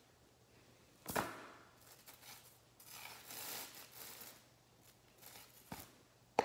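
Handling sounds: a single knock about a second in, then a few seconds of rustling and scraping, and a small click near the end.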